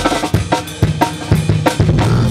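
A live rock band playing, led by a drum kit hitting fast and evenly, about four strikes a second, over sustained low bass notes.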